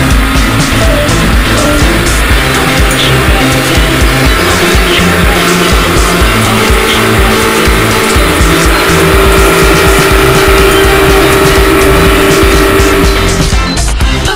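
Loud music soundtrack with a steady beat and a stepping bass line.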